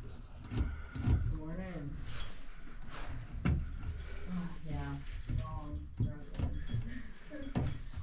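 A handful of light clicks and clinks as metal and plastic parts are handled at the stem of a Moen 1225 shower valve cartridge, with quiet muttering between them.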